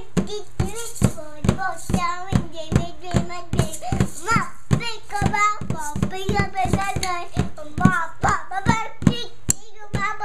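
A young child singing a made-up tune over a steady beat on a toy drum, about two to three strokes a second.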